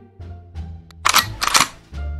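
Background music with held notes and a bass line. About a second in, two loud, short bursts of noise cut across it.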